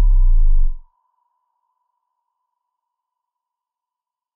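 Synthesized logo-intro sound effect: a deep bass boom sliding down in pitch, cutting off sharply under a second in, leaving a thin high ringing tone that fades away over the next few seconds.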